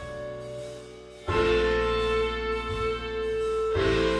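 Playback of a multitrack song mix: sustained chords, with a new chord coming in about a second in and another near the end. A mid-side EQ on the reverb bus, cutting the lows and lifting the highs of the sides, is being switched in and out for a before-and-after comparison.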